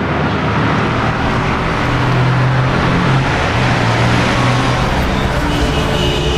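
City road traffic noise: a steady wash of traffic that swells up over the first second, with a low hum beneath it. A few musical tones come in near the end.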